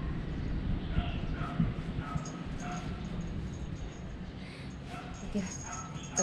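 Several short, high animal calls, scattered through a few seconds, over a low rumbling background.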